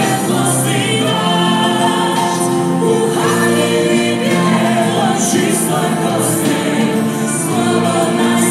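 Music: a choir singing a religious song, continuing steadily.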